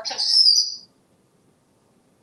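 African grey parrot giving one short whistle that sweeps quickly upward and holds a high note for about half a second.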